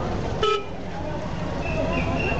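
A vehicle horn gives one short toot about half a second in, over the low running rumble of the car's engine and the voices of the crowded street.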